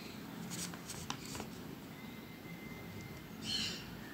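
Faint light scratching and a few small taps, with a short louder rustle near the end: diamond firetail finches moving about on plastic sheeting strewn with seed.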